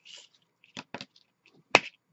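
Paper rustling briefly, then sharp clicks and taps from handling paper pieces and scissors on a tabletop: two close together about a second in, and a louder one near the end as the scissors are set down.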